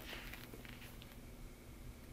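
Faint handling sounds of a quilted leather flap handbag being turned in the hands: a few light clicks and rustles over a low steady hum.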